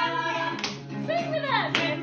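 Acoustic guitar being strummed, with people clapping along and voices between sung lines of a song.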